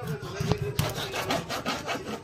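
Large kitchen knife sawing through a barracuda on a plastic cutting board as it is cut into steaks: quick back-and-forth rasping strokes, about five a second.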